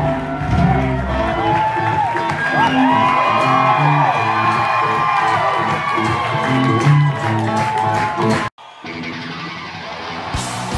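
Live rock band with electric guitars playing, with bending guitar notes, while the crowd cheers and whoops. About eight and a half seconds in the sound cuts off suddenly for a moment, and a quieter, duller live recording takes over.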